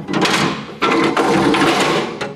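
Steel roof-hatch latches and hatch lid of a TKS tankette being worked open from inside, in two long bouts of metallic rattling and scraping, the second longer.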